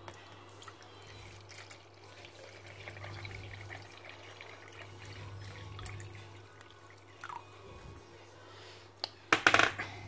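Water poured from a container into the plastic water tank of a baby-formula prep machine, running and splashing onto the filter. A few loud knocks follow near the end.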